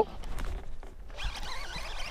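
Baitcasting reel being cranked to bring in a hooked bass, a rapid rasping whir that starts about a second in.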